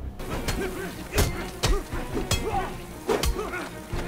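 Action-scene soundtrack of a TV drama: a tense music score with a series of sharp impacts, about five in four seconds, the loudest a little over a second in.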